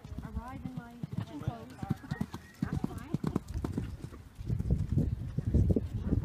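Horse's hoofbeats thudding on sand arena footing as it canters past, growing louder about two-thirds of the way in.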